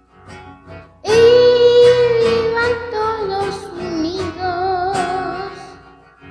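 A slow song: a child singing over acoustic guitar. A few soft plucked guitar notes open it, then about a second in the voice comes in on a long held note and carries a slow melody with a little wavering in the pitch.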